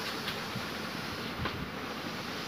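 Steady background noise of a busy shop, with a couple of faint knocks as goods are handled.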